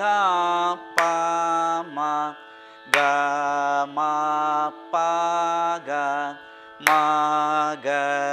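Male Carnatic vocalist singing a madhyasthayi varisai exercise in raga Mayamalavagowla on solfa syllables (sa ri ga ma pa), holding each note steadily and stepping from pitch to pitch, in phrases broken by short pauses for breath.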